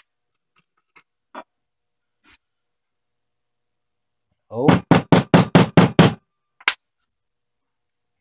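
A few faint clicks and taps of small steel stamps and the silver bar being handled, then about halfway through a man's "Oh" running into a short burst of laughter, six or seven quick pulses, followed by one more tap.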